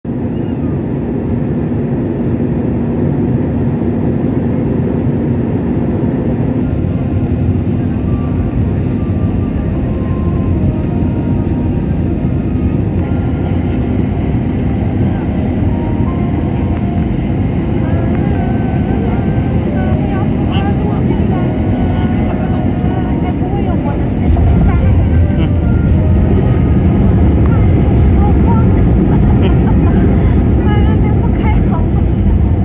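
Airbus A321 cabin noise heard from a seat behind the wing: the steady rumble of its CFM56 engines and rushing air during the descent and final approach. About 24 seconds in the rumble turns suddenly louder and deeper and stays so, as the airliner touches down and the engines spool up for reverse thrust.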